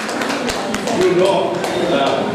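Scattered hand clapping from a small group, irregular single claps rather than full applause, over murmuring voices.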